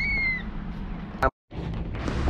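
A kitten's single short, high-pitched meow that dips slightly at its end, followed about a second later by a sharp click and a brief dropout in the sound.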